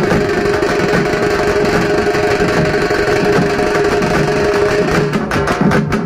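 Loud live procession music for a street dance: fast, dense drumming under a steady held note, with sharp rapid strokes coming in near the end.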